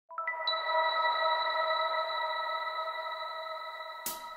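A chord of pure, bell-like electronic tones: five notes struck quickly one after another in the first half second, then held and slowly fading away.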